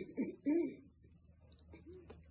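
A person's voice humming a few short rise-and-fall notes through closed lips in the first second, with one more faint note near the end.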